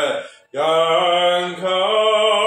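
A man singing a slow Mandarin ballad: a short sung word breaks off just before half a second in, then one long held note follows, its vibrato growing wider near the end.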